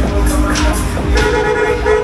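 Loud fairground ride music over the ride's sound system, with a pulsing heavy bass. A little after halfway a steady horn-like tone comes in and holds.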